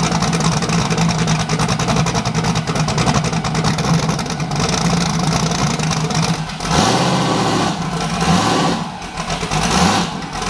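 Turbocharged LS V8 of a stripped-down C6 Corvette running at low speed as the car creeps forward under light throttle, with two short rises in revs in the second half.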